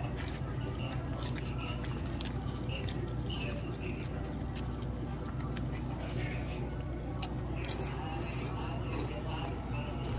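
Chewing and crunching tortilla-chip nachos close to the microphone, with small wet mouth clicks, over a steady low hum.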